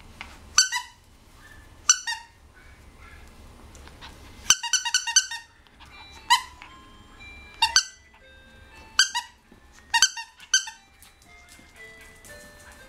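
Plush squeaky toy squeaking again and again as a puppy bites and tugs at it. The squeaks are short and loud with a falling pitch, some single and one quick run of several about four and a half seconds in.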